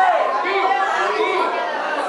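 Crowd chatter: many people talking loudly at once, with several voices overlapping.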